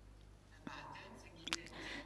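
A faint pause in a woman's speech: low room tone with a few soft mouth clicks and breathy sounds before she speaks again.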